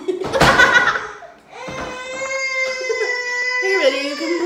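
A toddler's voice: a short noisy burst of vocalizing, then one long steady high held note lasting about two seconds.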